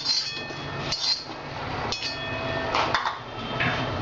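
A steel spoon clinking and scraping on an iron tawa as seeds are stirred and dry-roasted: several metallic strikes about a second apart, each leaving a short ringing.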